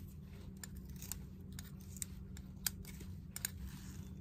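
Pliers working at the burnt, crusted tip of a soldering iron: scattered short metal clicks and scrapes, the sharpest about two and a half seconds in.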